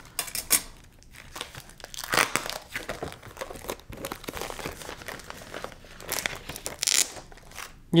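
Cardboard and packing tape being cut with a box cutter and pulled apart by hand: irregular crinkling, scraping and tearing with scattered clicks, louder about two seconds in and again near the end.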